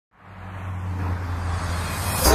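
Heavy truck's diesel engine running with road and traffic noise as it approaches, a steady low drone that grows steadily louder.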